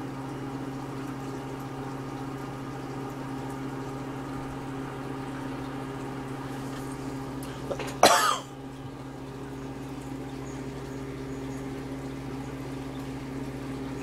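Aquarium air pump humming steadily as it drives the rock bubbler, with bubbling water in the tank. A person coughs once about eight seconds in.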